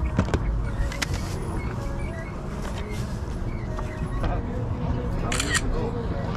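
Indistinct background voices at a moderate level, with a few sharp clicks. The loudest is a short run of clicks near the end.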